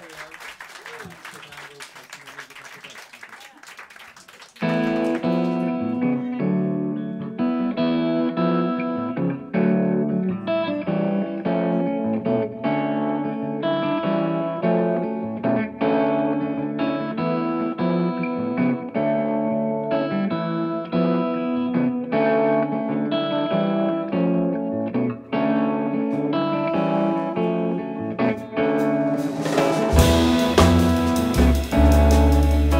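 Quiet murmur of voices in the room, then about four and a half seconds in an electric guitar starts playing alone, a jazz intro of chords and single notes through its amp. Drums come in at the very end.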